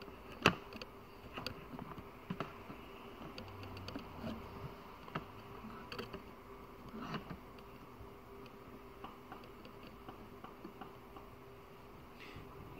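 Faint steady electrical hum on the workbench, with scattered light clicks and taps of small tools and one sharper click about half a second in as tweezers come away from the circuit board.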